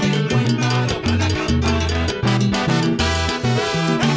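Salsa band playing the mambo section of a song: trombone lines over a moving bass line and steady percussion.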